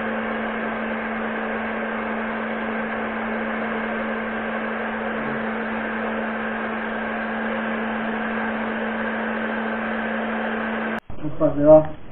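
Pet blow dryer running on a dog's coat: a steady motor hum with rushing air at an even level, stopping suddenly about eleven seconds in.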